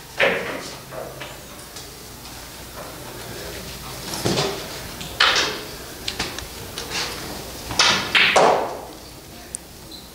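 Pool hall room sound: a low steady background with faint voices and a handful of short scuffs and knocks, the loudest a little after halfway and again near the end.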